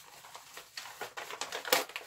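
Plastic packaging crinkling and crackling in the hands as a mailed CD is torn open, with a series of sharp clicks, the loudest near the end.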